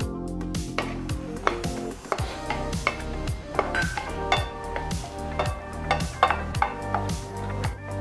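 Background music with a steady beat, with the light clatter of a wooden spatula stirring chopped vegetables in a frying pan.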